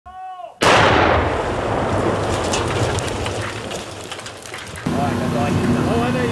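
A sudden loud explosion about half a second in, its rumble dying away over about four seconds. Near the end it cuts to a steady machine hum.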